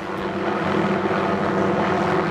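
Light helicopter flying past with a long line slung below it: a steady drone of rotor and engine.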